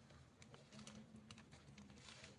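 Near silence: a faint low hum with a few scattered light clicks.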